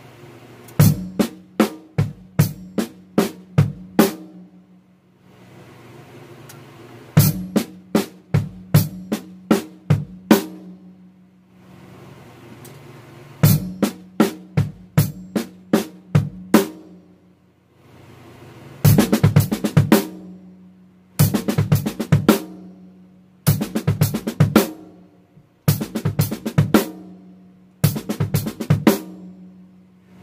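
Acoustic drum kit played slowly: bass drum and hi-hat on the beat with pairs of soft double strokes on the snare, an exercise for left-hand and heel-toe pivot speed. It comes in short phrases of a few seconds separated by pauses, with the phrases shorter and closer together near the end.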